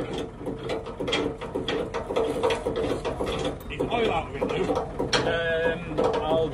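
Repeated short metal knocks and clunks as a diesel engine hanging from lifting straps is handled and lowered, over a steady hum.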